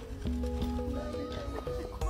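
Background music: a slow melody of held notes that step from one pitch to the next.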